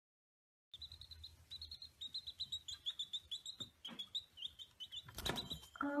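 Baby chicks peeping: a rapid string of short, high chirps, several a second, starting about a second in, with a single thump about five seconds in.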